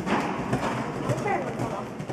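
Hoofbeats of a horse cantering on the soft footing of an indoor arena, with voices talking over them.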